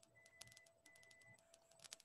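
Near silence: faint room tone with a few faint scattered clicks and a faint steady hum.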